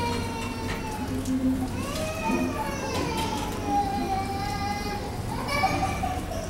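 A small child's high-pitched voice making long, drawn-out cries that slide down and up in pitch, with no words.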